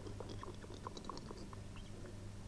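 Faint, irregular wet clicks and ticks as air is sucked out of a submerged plastic soft-drink bottle through a plastic tube and water seeps in, over a steady low hum.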